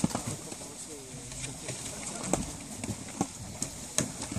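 Water gushing and splashing out of the end of a wide fish-stocking hose into a pond, with irregular knocks and gurgles as the outflow surges.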